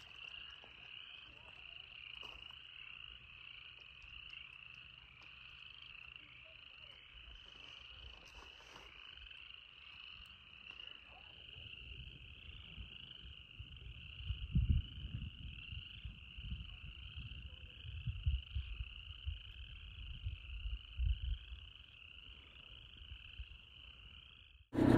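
A chorus of many frogs calling from a lake, short overlapping trills running on without a break. Intermittent low rumbles join in over the second half.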